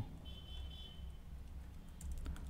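Quiet room tone: a low steady hum, with a thin faint high whine through about the first second.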